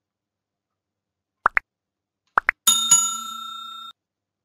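Sound effects of a like-and-subscribe button animation: two pairs of quick pops rising in pitch, about a second apart, then a notification bell ringing twice in quick succession and dying away before cutting off.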